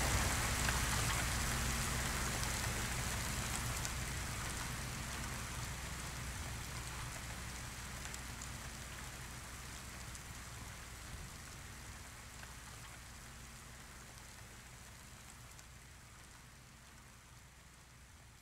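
A steady rain-like hiss with a faint low hum beneath it, fading slowly and evenly until it is almost gone near the end.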